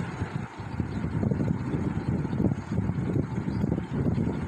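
Steady low rumbling background noise, with the faint short strokes of a marker writing on a whiteboard.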